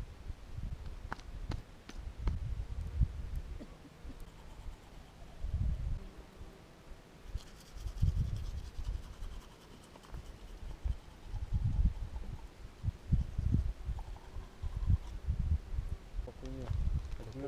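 Wind buffeting the microphone in irregular low rumbles that rise and fall every second or two. A faint high buzz comes in for a couple of seconds about halfway through.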